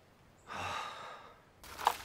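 A man's deep sigh, one long breath out lasting under a second. Near the end comes a single sharp click, louder than the sigh.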